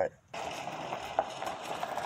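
Steady outdoor background hiss that starts abruptly after a brief silence.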